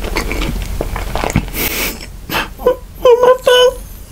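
A man's voice making several short, held hummed notes in the second half. Before that there is a soft noisy stretch with a few clicks.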